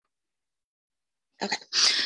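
Dead silence for over a second, then a woman saying "okay" on a breathy exhale.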